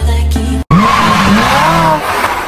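Music cuts off abruptly under a second in, replaced by the sound effect of a car drifting: tyres squealing, wavering in pitch, over engine noise.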